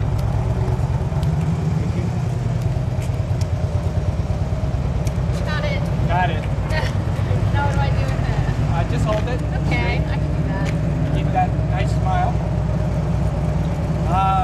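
A vehicle engine idling close by: a steady low rumble, with faint voices of people talking in the background.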